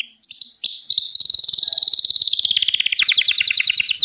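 Gloster canary singing: a few short high notes, then a long, fast trill of rapidly repeated notes that grows louder toward the end.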